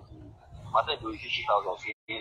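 Faint, indistinct speech: a few short murmured syllables in the second half, too low to make out.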